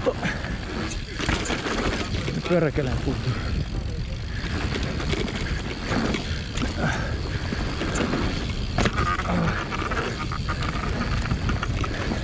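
Mountain bike descending a dirt trail at speed: steady rumble of the tyres on the ground and wind on the microphone, with short knocks from the bike over bumps.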